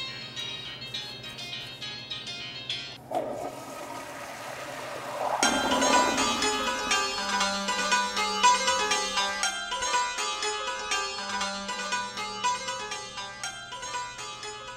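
Film score of quick plucked-string notes. About three seconds in, a rushing whoosh swells for a couple of seconds as the genie emerges from the rubbed bottle, and the music then comes back louder and busier.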